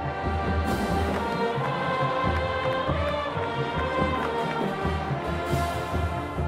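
Marching band playing: brass holding sustained chords over repeated low drum hits, with two loud crashes, one about a second in and one near the end.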